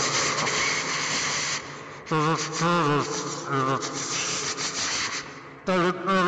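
Rasping static hiss with warbling, distorted voice-like sounds wavering up and down in pitch, breaking in about two seconds in and again near the end.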